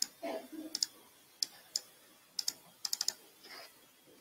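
Clicking at a computer: about a dozen sharp clicks from the keyboard keys and mouse buttons, scattered and irregular, some in quick pairs and a short run of four or five about three seconds in.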